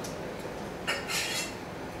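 A glass tumbler being handled on a bar counter, with one light clink a little under a second in.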